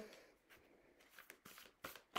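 Near silence, with a few faint, short clicks of a tarot deck being shuffled by hand in the second half.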